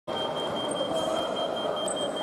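Steady background noise of a large indoor sports hall, with a thin high tone pulsing about four times a second.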